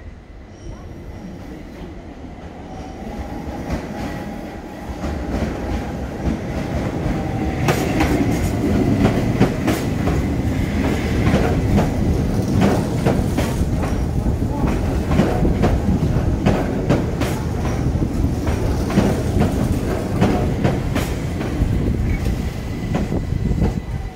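Keihan 800 series electric train approaching and running past close by, growing louder over the first several seconds with a pitched whine, then a long run of rapid clicks and clatter from its wheels over rail joints and points.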